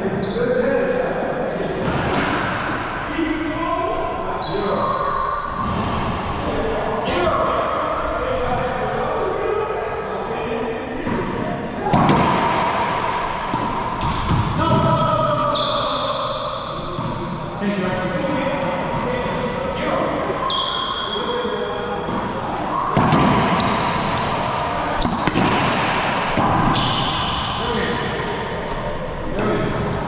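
Racquetball rally in an enclosed court: repeated sharp racquet strikes and the ball smacking off the walls and floor, echoing, with short high squeaks of sneakers on the hardwood floor.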